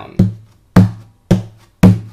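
Percussive 'bass thump' on a Takamine acoustic guitar: the heel of the palm strikes the wooden top just above the sound hole, four evenly spaced thumps about half a second apart. Each hit lands with a short low ring from the guitar body, meant to sound like a bass drum.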